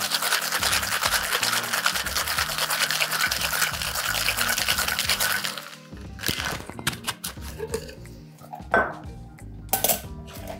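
Ice rattling hard inside a metal tin-on-tin cocktail shaker in fast, even shaking, which stops abruptly about five and a half seconds in. Scattered metallic clicks and knocks follow as the tins are handled and pulled apart, the loudest a sharp knock near the end.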